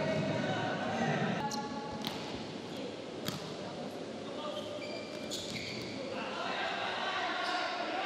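Volleyball rally in a large indoor hall: several sharp smacks of the ball being spiked and played, spread a second or two apart, over a steady murmur of the hall.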